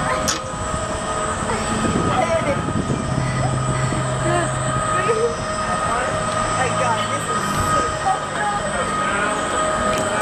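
Steady mechanical whine and hum of a Zamperla Volare flying coaster train rolling into its loading station. A lower drone comes in about three seconds in, over voices chattering.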